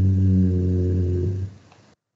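A man's voice held on one long, low hesitation sound, an 'ehhh' at a nearly flat pitch. It fades about one and a half seconds in, then cuts to silence as the call's audio gates off.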